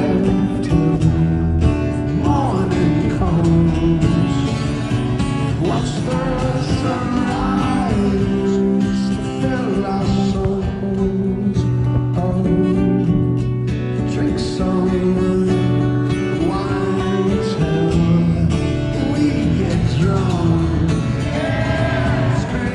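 Acoustic guitar playing a song, with a singing voice over it.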